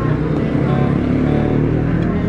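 Restaurant background noise: voices of diners and staff over a steady low rumble.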